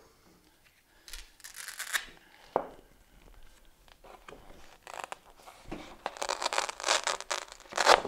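A large sheet of poster paper is lifted and turned over on a display board, rustling and crinkling in irregular bursts that are busiest and loudest over the last two or three seconds.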